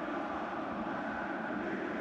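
Steady, even background noise of the football match's pitch-side ambience, with no distinct strokes or calls standing out.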